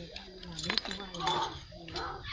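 Metal parts and tools clinking as a mini rotary tiller is bolted together by hand, with a sharper clink about three quarters of a second in.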